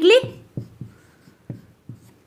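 A marker writing on a whiteboard: a few short, separate strokes and taps as a word is written, after a woman's spoken word ends at the start.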